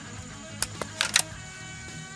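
Sharp clicks and snips of a hand wire stripper/crimper tool cutting a wire: four quick clicks starting about half a second in, the last two the loudest. Quiet background music plays underneath.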